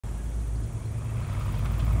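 Police patrol car's engine and tyres, a steady low rumble growing gradually louder as the car rolls in.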